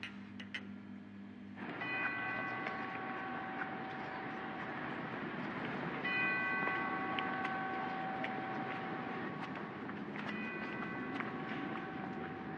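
Several whistles sound together in long, overlapping held blasts, starting about two, six and ten seconds in, over a steady hiss of noise. These are typical of the locomotive and factory whistles sounded for Stalin's funeral.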